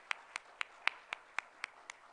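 Hand clapping in a steady, even rhythm of about four claps a second, greeting good news.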